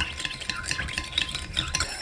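Metal teaspoon stirring warm water with dissolving yeast and sugar in a ceramic bowl, with small irregular clinks and light scraping against the bowl.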